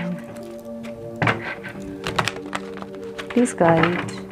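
A deck of tarot cards being shuffled by hand, giving several sharp clicks and thunks as the cards knock together, over background music of steady held notes.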